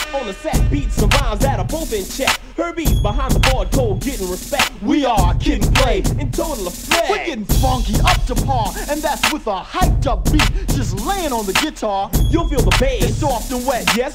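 Hip hop track playing in a live DJ blend: a rapper's vocal over a beat with heavy bass hits about every two seconds.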